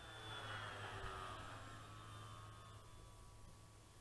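Faint, distant whine of a radio-controlled Bearcat warbird model's motor and propeller high overhead, its pitch sliding slowly down as it flies by and fades.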